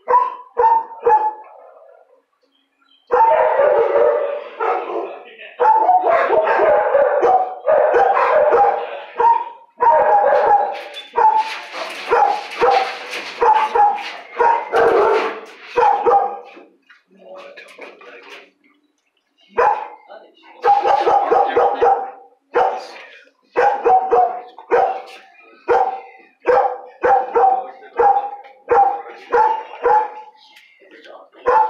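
Shelter dogs barking repeatedly. From about three to sixteen seconds in the barks run together almost without a break; after a short lull they come singly, about two a second.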